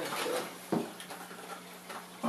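Light handling and rustling of plastic camera gear, the GoPro mounted on its Karma Grip handheld stabilizer, with one sharp click a little under a second in, over a faint steady hum.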